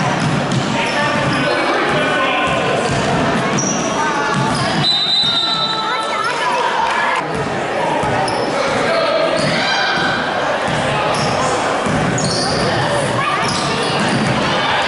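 A basketball being dribbled on a hardwood gym floor during a youth game, the bounces mixed with indistinct chatter of spectators in a large gymnasium.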